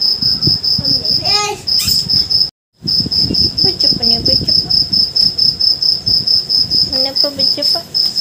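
Insect chirping: a steady, rapid, high-pitched pulsing at about eight pulses a second, which cuts out for a moment about two and a half seconds in.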